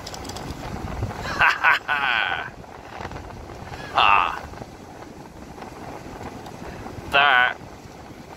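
Gusty wind rumbling on the microphone, easing after about a second and a half, broken by three short excited vocal exclamations.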